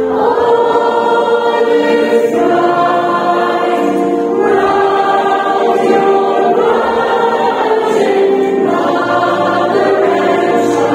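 Mixed choir of children and adults singing a Christmas carol slowly, each chord held about two seconds before moving to the next.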